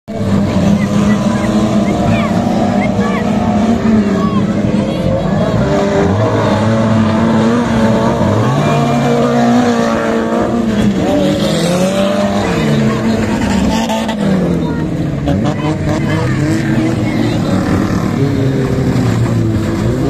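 Engines of a pack of small hatchback stock cars racing on a dirt track, several at once, their pitch rising and falling as they rev up and lift off.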